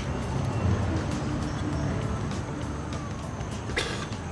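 Low, steady rumble of a nearby motor vehicle engine, fading a little after the first second. A faint siren tone glides down in pitch in the second half, the start of a passing emergency vehicle. A short sharp noise comes just before the end.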